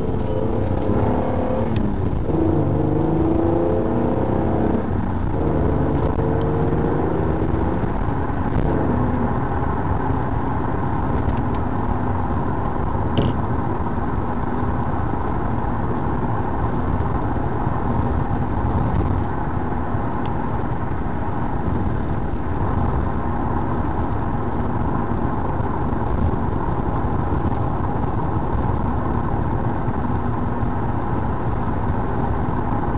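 Car engine accelerating from a near standstill, its pitch rising in about three pulls over the first eight seconds as it goes up through the gears. It then settles into a steady cruise with engine and road noise, with one short click about halfway through.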